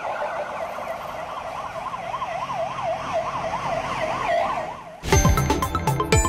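Police vehicle siren yelping, its pitch sweeping rapidly up and down a few times a second. About five seconds in it is cut off by a short electronic jingle with sharp hits.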